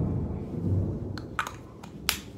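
Rumbling handling noise as a body brushes against the recording phone: a sudden low rumble that fades over about a second and a half, followed by a few light clicks.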